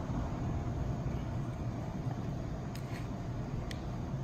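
Steady low rumble of traffic from a nearby interstate highway, with a few faint ticks near the end.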